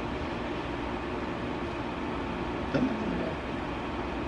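Steady background hum of room noise, with one short vocal sound, falling in pitch, about three seconds in.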